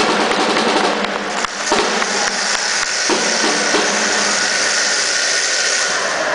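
Indoor applause: many hands clapping together, dense and steady throughout, with the echo of a large hall.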